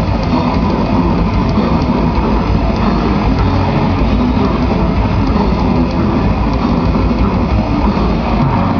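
Live grindcore band playing at full volume: distorted electric guitar, bass and drums in a dense, unbroken wall of sound.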